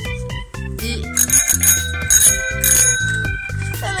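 Handlebar dome bell of a retro city bicycle ringing repeatedly for about two seconds, starting about a second in, over background music with a steady beat.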